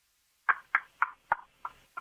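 A man laughing over a telephone line: a run of short, quick chuckles, about three a second, starting about half a second in.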